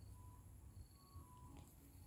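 Near silence: faint low background rumble with a few faint thin steady tones.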